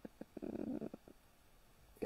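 A pause between words: a few faint mouth clicks and a short breath, then quiet.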